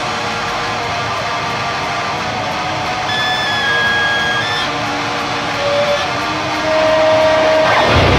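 Blackened hardcore music in a passage without drums: distorted electric guitar ringing out, with a few high held tones over it, growing louder near the end.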